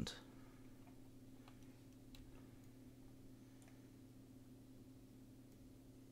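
Near silence: steady low room hum with a few faint, scattered clicks of computer input.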